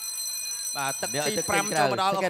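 A steady, high electronic buzzer tone holds for about two seconds, with a man's commentary starting under it about a second in.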